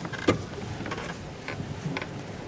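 Ambient noise of a large hall with a seated audience: a steady low rumble, one sharp click about a quarter of a second in, and a few smaller knocks and rustles.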